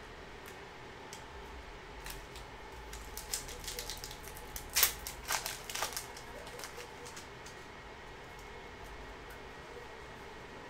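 Foil wrapper of a trading card pack crinkling and tearing open by hand, a run of sharp crackles between about two and six seconds in, loudest near the middle. The rest is a faint steady room hum.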